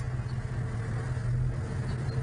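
Street traffic noise with a steady low engine hum, as of a motor vehicle running nearby.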